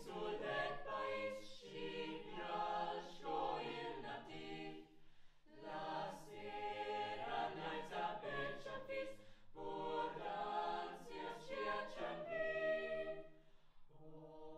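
Choir singing a cappella in phrases of a few seconds each, with short breaks between them.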